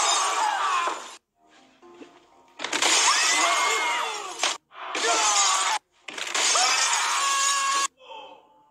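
Glass panes shattering in four loud bursts, each cut off abruptly, with cries and music mixed through them.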